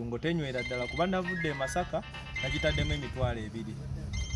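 A man's voice with music over it: a high, bright electronic melody of short repeated notes.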